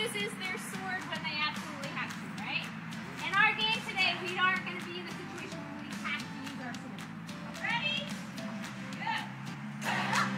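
Many children's high-pitched voices chattering and calling out indistinctly over soft, steady background music.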